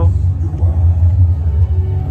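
A loud, deep rumbling drone with music over it, played through outdoor loudspeakers.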